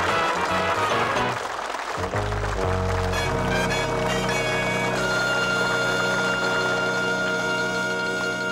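Sitcom opening theme tune playing over the end titles, its moving melody giving way about two and a half seconds in to a long held final chord.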